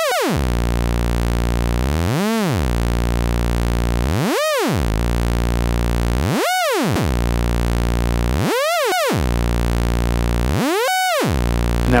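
Doepfer A-110 analog VCO playing a steady, buzzy tone whose pitch swoops steeply down and back up about every two seconds, some dips deeper than others. The swoops are LFO pitch modulation passed through an A-131 exponential VCA, with a second LFO on the VCA's CV input varying how much modulation reaches the oscillator.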